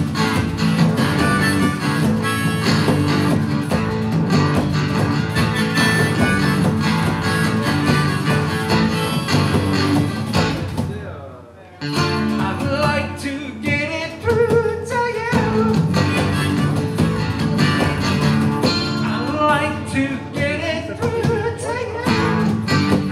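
Live acoustic guitar strumming with a harmonica melody over it, in a bluesy style. Just before halfway the sound fades for about a second, then cuts back in suddenly.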